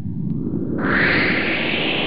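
A sound effect played over the end logo: a rushing, whoosh-like noise with a low rumble underneath. It grows brighter and louder about a second in.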